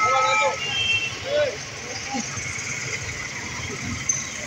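Busy street-market ambience: background voices talking and calling out over a steady hum of road traffic.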